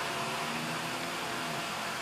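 Greenhouse misting system spraying, with a small solar-powered fan running: a steady hiss with a faint hum.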